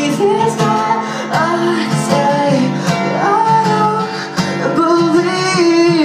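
A singer's voice carrying a melody over acoustic guitar, played live as a solo performance.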